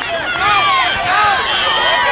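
Many high-pitched voices shouting and yelling over one another, children and spectators cheering on a running flag football play.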